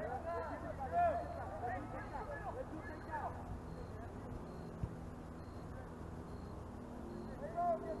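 Distant shouts of soccer players and spectators across the field, several voices calling over each other in the first few seconds and again near the end, over a steady low hum.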